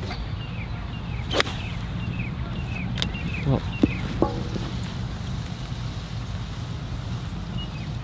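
Seven iron striking a golf ball on a full approach swing: one sharp crack about a second and a half in, over a steady low hum, with a run of short high chirps behind it.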